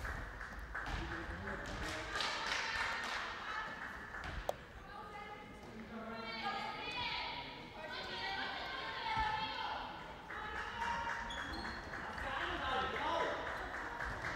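Echoing sports-hall sound during a handball game: players' voices calling out across the court and a handball bouncing on the floor, with one sharp thump about four and a half seconds in.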